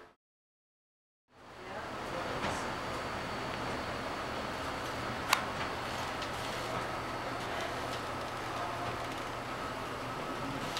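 About a second of dead silence, then steady air-handling hum with a faint high tone. One sharp click comes about five seconds in.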